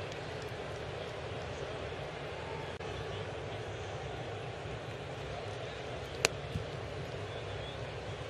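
Steady murmur of a ballpark crowd, with one sharp pop of a fastball into the catcher's mitt about six seconds in.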